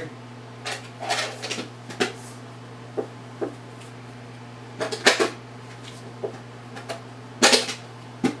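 Cards and packaging being handled on a table: scattered clicks, knocks and rustles, with two louder knocks about five and seven and a half seconds in, over a steady low hum.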